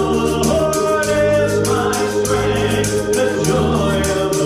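A man singing a gospel song into a microphone over an accompaniment with sustained chords, a low bass line and a steady beat of about four strokes a second.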